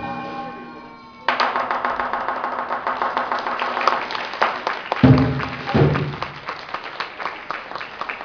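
Chinese lion dance percussion: a gong rings out and fades, then about a second in a dense, fast run of drum and cymbal strikes starts and keeps going.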